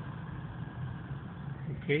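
Car engine running with a steady low hum, heard from inside the car.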